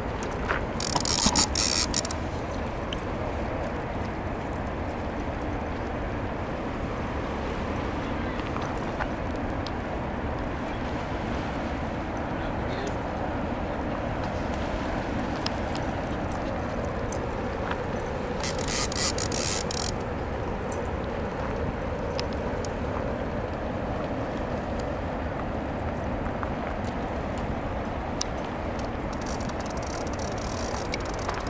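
A fishing reel's drag buzzes twice as a hooked sturgeon pulls line off, first about a second in and again about two-thirds of the way through, each time for a second or so. Under it runs the steady rush of a fast river.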